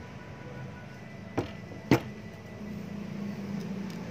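Two sharp knocks about half a second apart, the second louder: the metal tube of a foot pump being set down on a wooden table. A steady low hum runs underneath.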